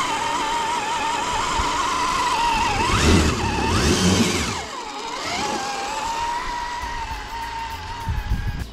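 Electric motor and gears of an Axial SCX10 III 1:10 scale RC crawler whining steadily. Two quick throttle bursts, about three and four seconds in, rise and fall in pitch over a low rumble; these are the loudest part.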